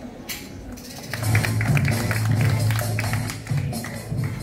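Music with a steady low bass note and a regular percussive beat, starting loudly about a second in.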